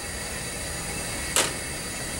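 Room tone: a steady hiss in a lecture room during a pause in speech, with one brief soft noise about one and a half seconds in.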